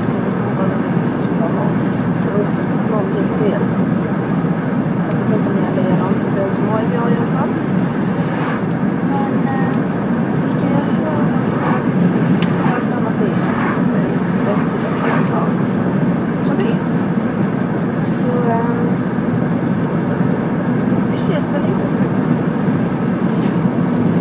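Steady road and engine noise heard inside a moving car's cabin, with a woman's voice faintly under it.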